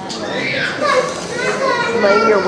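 Several children talking at once in overlapping, high-pitched chatter.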